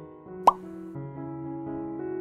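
Soft background keyboard music, with one loud, short plop about half a second in that rises quickly in pitch.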